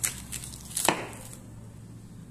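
Kitchen knife cutting into a large plastic-wrapped wheel of cheese on a wooden board, the cling film crackling as the blade goes in. A few sharp crackles and knocks, the loudest just under a second in.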